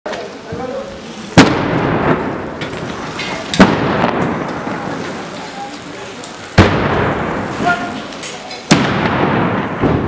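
Four loud explosions from bombardment, each a sudden blast followed by a long fading echo between buildings.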